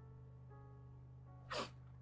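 Faint background music of soft held tones over a low hum, with one short, sharp breath about one and a half seconds in.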